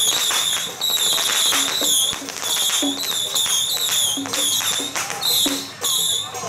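Taiwanese temple-procession music: a repeating shrill, wavering high-pitched phrase over frequent gong and cymbal strikes.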